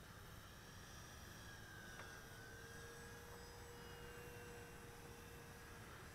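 Faint whine of a distant electric RC warbird, the E-flite P-47 Thunderbolt's brushless motor and propeller, as steady thin tones over a soft hiss, some of them slowly bending in pitch as the plane moves. A single light tick about two seconds in.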